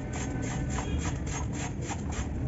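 Knife blade shaving a dry cement block in quick scraping strokes, about five a second, with the powdery cement crumbling off.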